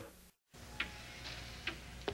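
Music cuts off into a moment of dead silence, then a faint low hum with two sharp clicks about a second apart.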